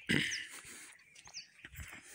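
A short, loud animal call right at the start that fades within about half a second, with two brief high chirps from small birds.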